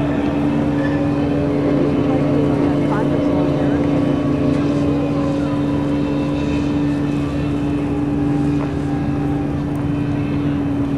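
A steady mechanical drone from a running engine or generator, holding one low pitch without rising or falling, with faint voices in the background.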